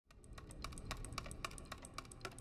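Faint, quick, irregular clicking like keys being typed on a keyboard, over a low rumble.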